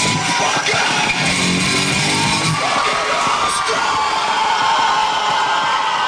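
Loud live rock music with guitar, with voices yelling and whooping over it.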